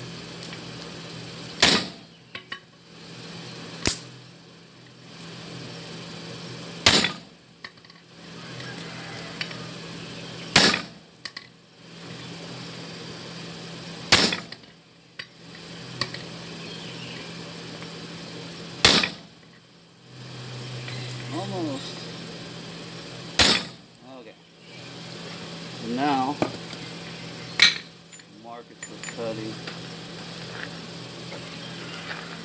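A heavy hammer striking a glowing steel bar on an anvil: slow, single blows, about eight in all, one every three to five seconds, each a sharp clang with a high ring.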